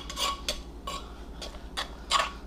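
A spoon scraping and clinking against a mortar bowl in a few short strokes, scooping out a pounded mushroom-and-pepper mixture.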